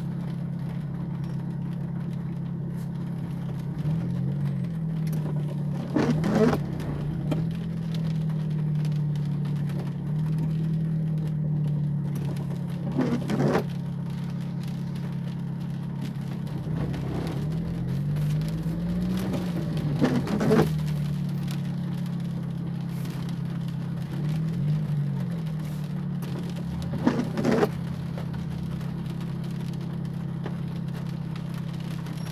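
Car engine running at idle, heard from inside the cabin, its hum rising and falling gently a few times as the car inches forward in stop-and-go traffic. Windshield wipers on intermittent give a short double swish about every seven seconds, the loudest sounds here.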